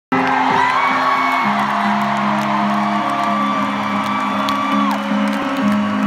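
Live band music amplified in a large arena, with long held keyboard-like notes, and whoops and screams from the crowd over it.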